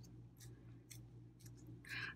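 Very quiet: a few faint, soft clicks and crinkles from nitrile-gloved fingers pressing and shaping a small lump of clay, over a low steady hum.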